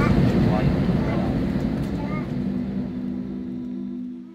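Airliner cabin noise: the low rumble of the jet heard from inside the cabin, with faint voices over it and a steady low hum coming in over the last couple of seconds, the whole slowly fading.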